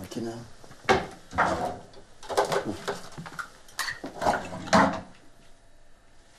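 Toiletry items knocking and clattering on a bathroom sink counter as they are rummaged through: a string of sharp knocks, the loudest about a second in and again near the end.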